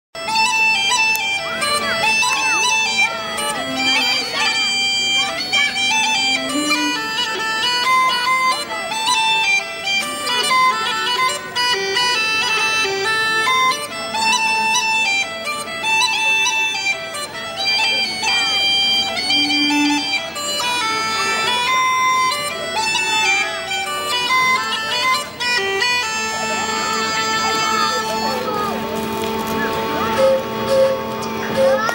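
An Irish traditional band plays an instrumental tune on uilleann pipes and fiddle, with the pipes' steady drone under the melody.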